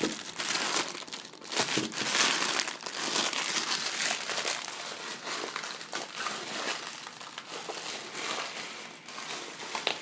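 Packaging of a box of frozen pancakes crinkling and crackling irregularly as hands struggle to open it, busiest in the first few seconds and easing off toward the end.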